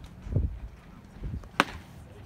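A single sharp pop about a second and a half in: a pitched baseball smacking into the catcher's leather mitt.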